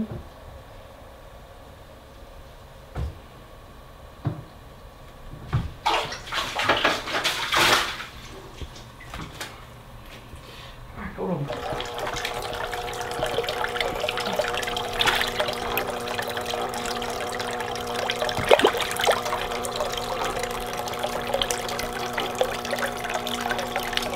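Splashing in shallow water for a couple of seconds as a fish is netted out of a nearly drained aquarium. Then a steady trickle and splash of water from hang-on-back filters pouring into plastic tubs, with a steady hum.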